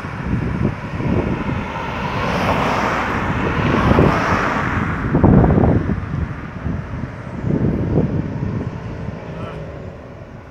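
A car passing by on the road, its tyre and engine noise building to a peak about halfway through and then fading away, with wind buffeting the microphone.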